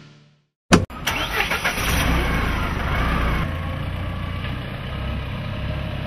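A sharp knock just under a second in, then a Mahindra jeep's engine starting and running steadily.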